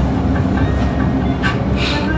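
Steady low rumbling background noise with no speech.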